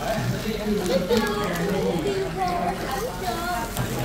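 Voices talking, one after another, with no pause.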